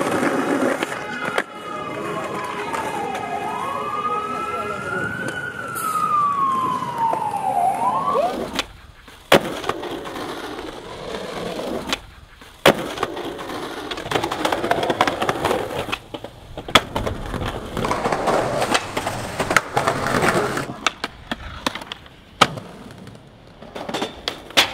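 Skateboard wheels rolling over concrete, with sharp clacks of the board popping and landing at intervals in the second half. During the first several seconds a siren wails, rising and falling in pitch.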